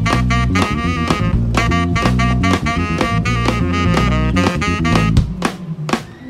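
Live jazz band playing: tenor saxophone lead over drum kit, keyboards and a strong bass line. About five seconds in, the bass and full band drop out into a sparse break with a few drum hits.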